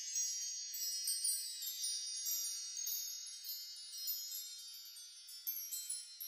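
A faint, shimmering wind-chime-like sound effect: many high bell tones ring together and slowly fade away.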